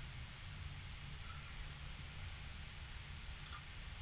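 Quiet pause: faint room tone, a steady low hum with a light hiss.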